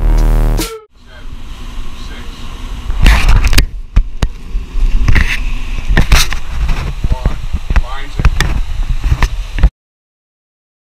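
Indistinct voices amid rumbling, gusty noise with knocks, cut off suddenly near the end.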